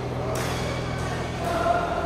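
Reverberant badminton-hall ambience: a steady low hum, a sharp shuttlecock strike about a third of a second in and a fainter one about a second in, and a wash of distant voices with a brief call near the end.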